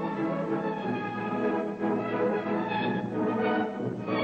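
Orchestral ballet music playing continuously, with sustained notes from a full orchestra.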